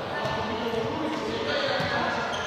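Indistinct voices echoing in a large sports hall, with a few light thuds of a small ball.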